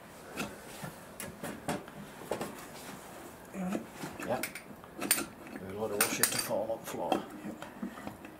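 Scattered metallic clinks and knocks as a racing engine's cylinder head is worked loose and lifted off the block by hand, busiest in the second half.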